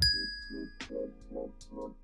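A single bright ding sound effect that strikes at the start and rings out, fading over about a second, over background music with a steady beat.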